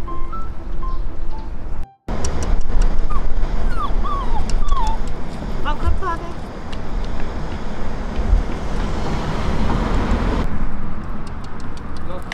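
A bichon frise puppy whining in several short, high cries that fall in pitch, a few seconds in, over a loud low rumble of wind on the microphone. Light background music plays before a cut about two seconds in.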